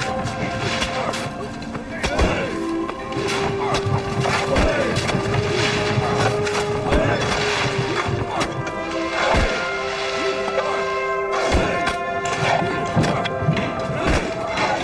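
Background score music with long held notes, over dull thuds of shovels and pickaxes striking packed earth, one every two seconds or so.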